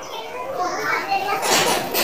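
Children's voices in the background, faint and indistinct, with a short rustle about a second and a half in.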